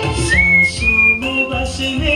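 A person whistling a Bollywood song melody over the song's recorded music. A clear whistled line enters about a third of a second in, slides up and climbs through a few held notes.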